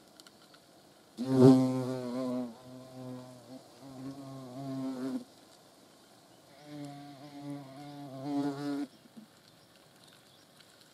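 European hornet wings buzzing in two bouts: a loud buzz that starts suddenly about a second in and lasts some four seconds, then a softer one near the end, its low pitch wavering.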